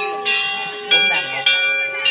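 Brass temple bells hung at a shrine entrance, struck by hand three times about half a second apart. Each strike rings on with clear metallic tones that overlap the next, and the bells differ in pitch.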